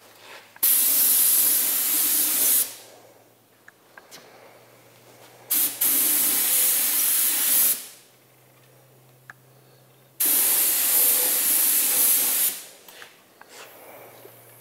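Compressed-air paint spray gun triggered in three bursts of about two seconds each, hissing as it lays paint into an engine bay.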